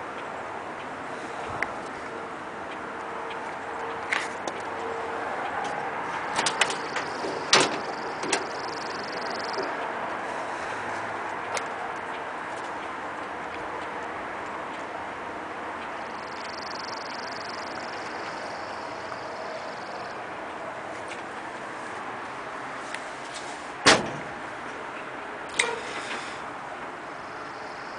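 Steel cab door of a 1942 Chevrolet military truck being opened and handled: scattered metallic clicks and knocks, the loudest a single sharp knock near the end.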